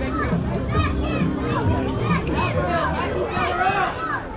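Many overlapping children's and adults' voices calling out and chattering, with no clear words, over low music.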